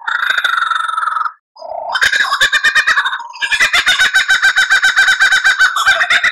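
Lyrebird song: a warbled phrase for about a second, a brief pause, then a long run of rapid, evenly repeated notes, about nine a second.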